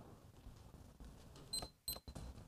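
Faint room tone in a quiet hall, with two short, high-pitched blips close together about a second and a half in.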